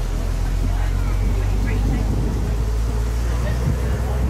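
Open-top bus on the move: a steady low rumble of its engine mixed with wind buffeting the microphone.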